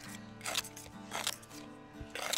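Steel putty knife scraping against gritty asphalt shingles in three short strokes as it is worked under the shingle edges, over steady background music.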